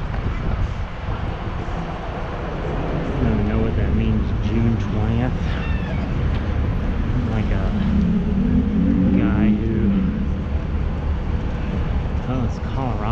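Steady low rumble of city traffic, with a voice talking indistinctly about three to five seconds in and again from about seven to ten seconds.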